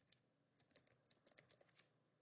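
Faint typing on a computer keyboard: a quick, irregular run of a dozen or so light key clicks.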